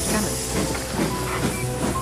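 Steady hiss of steam from a steam train, with a low rumble and quiet film-score music underneath.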